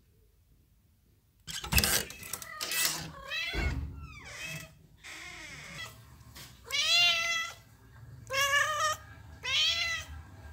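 Kittens meowing: about four short, high-pitched meows spaced a second or two apart, the loudest about seven seconds in. A couple of brief rustles come about two seconds in, after a quiet opening.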